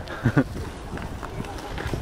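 A short laugh about a quarter of a second in, then footsteps on concrete and handling noise from a hand-held camera while its holder walks.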